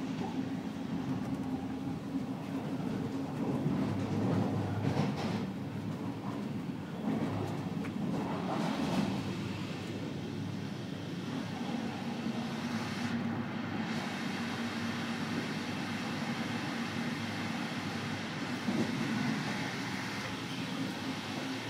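Running noise of a City Night Line passenger coach at speed, heard from inside the carriage: a steady rumble of the wheels on the rails with a low hum, swelling a little twice in the first half.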